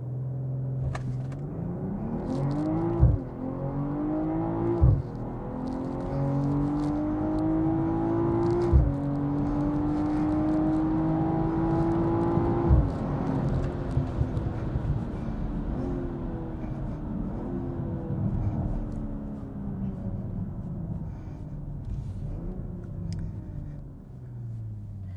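Car engine heard from inside the cabin on a full-throttle acceleration run in sport mode. Its pitch climbs through the gears, with upshifts about 3, 5, 9 and 13 seconds in, each a sudden drop in pitch. After the last one it settles to a lower, steadier, slowly falling drone as the car eases off.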